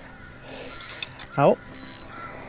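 Spinning fishing reel giving off a fine, rapid, high clicking in two short spells, about half a second in and again near the end.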